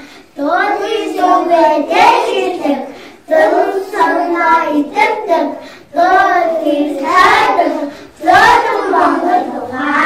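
A group of young children singing together in unison, in phrases of a few seconds with short breaks for breath between them.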